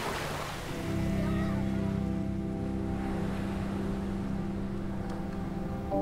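Surf washing in over the sand, fading out within the first second, then a steady held music chord.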